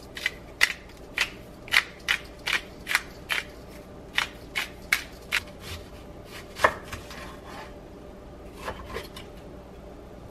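Kitchen knife chopping on a cutting board while cutting an onion: quick sharp chops about two a second for roughly five seconds, then one loud chop about two-thirds of the way in and two fainter ones near the end.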